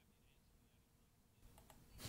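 Near silence from an audio dropout, with a few faint clicks near the end.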